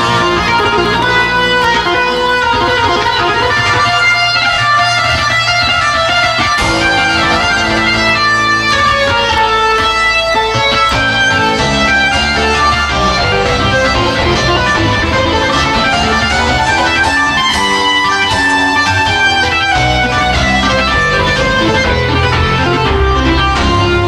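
Solo keyboard playing, chiefly Hammond organ: a continuous stream of loud, sustained, overlapping chords and running notes.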